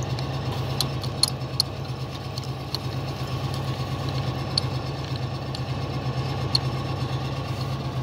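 An engine idling steadily, with a few faint clicks over it.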